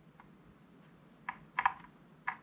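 A few faint, short plastic clicks, mostly between about one and two seconds in, as a USB cable plug is worked out of the socket in the right half of a Kinesis Advantage 360 split keyboard.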